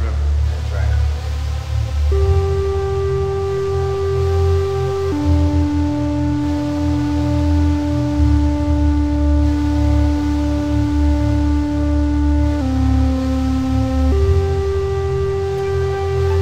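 Electronic instrumental music: long held synth tones that step to a new pitch every few seconds, entering about two seconds in, over a steady low bass layer. A spoken sample fades out in the first second.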